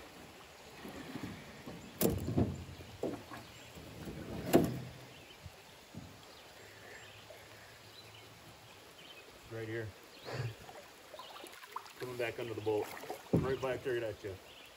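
Two sharp knocks on an aluminum canoe's hull, about two and a half seconds apart, the second louder, then a few low spoken sounds near the end.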